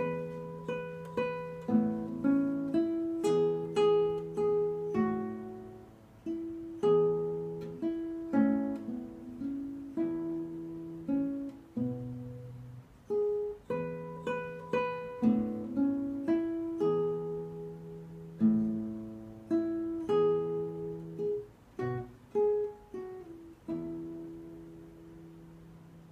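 Classical nylon-string guitar played fingerstyle solo: a slow melody over plucked bass notes. About two seconds before the end the playing stops and the last chord rings and fades.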